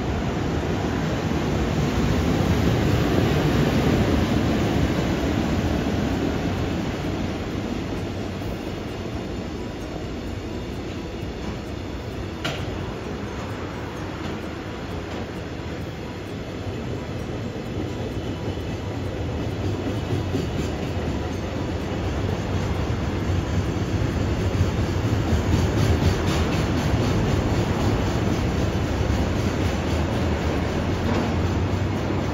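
A JR Freight container train passing on electric-railway track, a silver electric locomotive followed by a long string of container wagons: a steady rumble of wheels on rail that swells about four seconds in and again near the end, with one sharp click about twelve seconds in.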